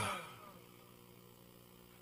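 A man's voice trailing off, sliding down in pitch and fading within the first half second, then quiet room tone with a faint steady electrical hum.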